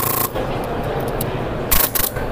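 Nexxus HPA airsoft engine dry-firing on full auto, a rapid stream of compressed-air shots that cuts off just after the start. About 1.7 s in comes one more short, sharp burst from it, over a background of general hubbub.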